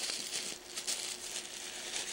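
Tissue paper rustling and crinkling as a hand pushes through it inside a gift box, a steady run of small crackles.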